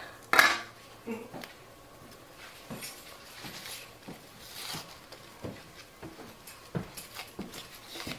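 Hand-peeling of yellow onions: the dry, papery skins rustling and crackling as they are pulled off, with scattered light clicks and taps of a paring knife on a cutting board. A brief louder knock comes just after the start.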